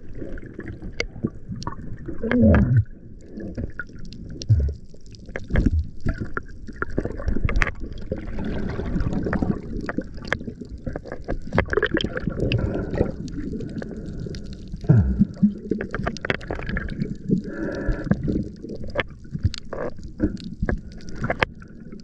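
Water gurgling and churning around an underwater camera as a swimmer moves, with scattered knocks and clicks and a few short gurgles throughout.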